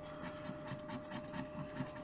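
A wooden stick scratching the latex coating off a paper scratch-off lottery ticket in quick, short, faint strokes.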